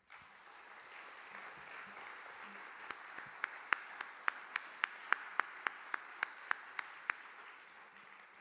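Audience applause that starts abruptly and fades toward the end. One person claps close to the lectern microphone at about three or four claps a second, standing out from about three to seven seconds in.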